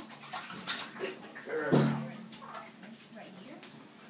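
A small dog whimpering while it is lifted wet out of a bathtub in a towel, with scattered knocks and scrabbling. A louder, low vocal sound comes a little under two seconds in.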